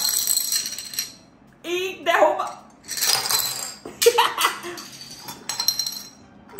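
Small plastic dominoes toppling and clattering against each other and the stone countertop in several bursts as the chain reaction runs. A short giggle comes about two seconds in.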